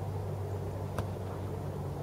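A football kicked once on an artificial-grass pitch, a single sharp knock about a second in, over a steady low hum.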